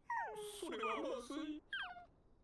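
A high-pitched voice from the anime episode, playing at low volume, in three short cries that each fall steeply in pitch.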